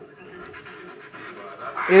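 Low, even background noise during a pause in speech, then a man starts talking near the end.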